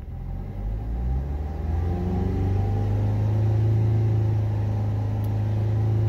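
Maruti Suzuki Ertiga diesel engine revved up from idle: its pitch and loudness rise over the first two seconds or so, then it holds steady at about 3,000 rpm. Heard from inside the cabin.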